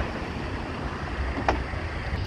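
Powered tailgate of a Volkswagen Tiguan closing outdoors, under a steady low rumble of wind on the microphone, with a single sharp click about one and a half seconds in as it latches.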